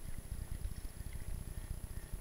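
Rumble of wind buffeting the microphone and the bumping of a mountain bike rolling over a rough dirt singletrack, a low, uneven noise that rises and falls with the bumps.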